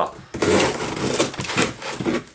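Seatbelt cutter of a Victorinox Rescue Tool pocket knife slicing through cardboard, a continuous scratchy cutting noise that starts a moment in and lasts about a second and a half.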